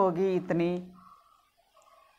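A woman's voice speaking for about the first second, then a pause with only faint background noise.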